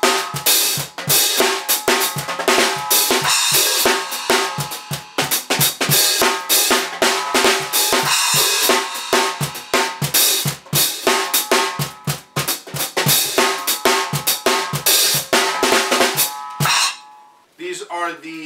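A drum groove played on a small acoustic kit with Vater Whips: hi-hats, snare and splash struck with the whips over regular low kick thumps from a cajon used as the bass drum. The whips bring the kit's tone down for a quiet acoustic setting. The playing stops about a second before the end.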